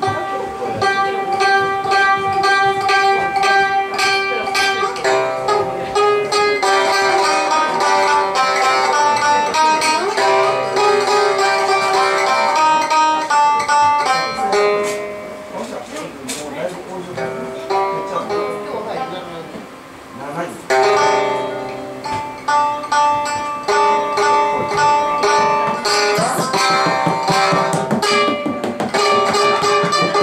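A minmin, a plucked string instrument, played live: a held drone note under a line of plucked melody notes. It goes quieter through the middle and comes back strongly a little past two-thirds of the way through.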